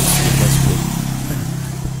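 Honda Supra Fit motorcycle's single-cylinder four-stroke engine running steadily at idle, with a louder rush of noise in the first half-second.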